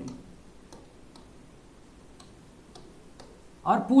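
Faint, irregularly spaced clicks and taps of writing on a board. A man's voice starts again near the end.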